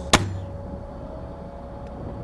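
A single sharp report just after the start, a 60 mm mortar being fired, followed by a faint steady hum.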